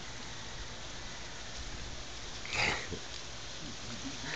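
Steady outdoor background hiss, with one short vocal sound from a toddler about two and a half seconds in.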